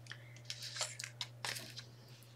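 Sheets of printer paper being handled and slid across a table: a few short, faint rustles and light taps.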